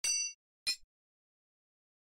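Sampled metallic percussion from a Nepali-instruments VST plugin, played on its keyboard. A ringing, bell-like strike comes at the start, then a shorter clink about two-thirds of a second in.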